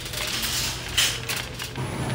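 Metal wire shopping cart rattling and clinking as it is pushed, with a sharper clink about a second in.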